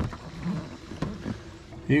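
Livewell pump-out pumps on a Phoenix bass boat running steadily, draining both livewells overboard.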